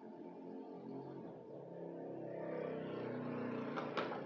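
A motor vehicle's engine hum that grows louder over the first three seconds and then begins to fade. A sharp click comes just before the end.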